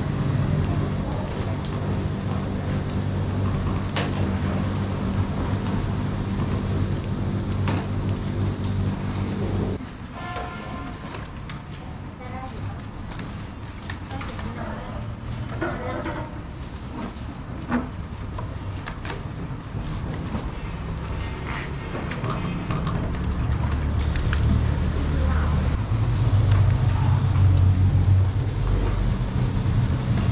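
A steady low motor hum stops abruptly about ten seconds in and returns, louder, over the last several seconds. Faint scattered knocks and rubbing run throughout.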